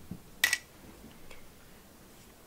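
A few small plastic beads dropped into a small plastic cup: one short, sharp clatter about half a second in, then a faint tick.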